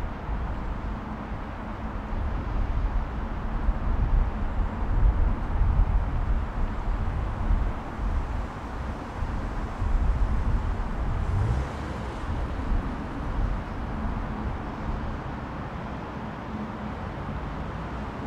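Jet engine noise of a Boeing 747 Combi on final approach: a low, uneven rumble that settles into a steadier hum in the last few seconds.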